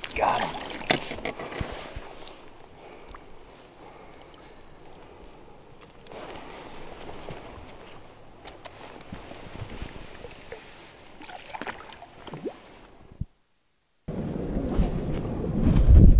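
Largemouth bass thrashing and splashing at the surface as it is grabbed by the lip and lifted out of the water, followed by quieter water lapping and handling noise. Near the end the sound cuts out briefly, then wind buffets the microphone with a loud low rumble.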